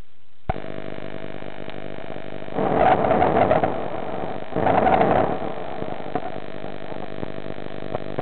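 Diver's breathing over a diving communications line: a steady hum with many even overtones switches on sharply about half a second in. Twice, about two seconds apart, a rushing breath of a second or so rises over it.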